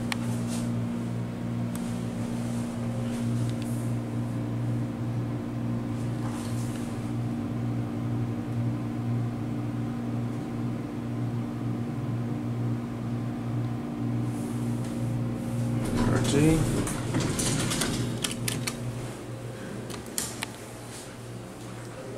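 Hydraulic passenger elevator descending: a steady low hum in the cab that fades as the car comes to a stop, followed by a sharp click near the end as the doors open.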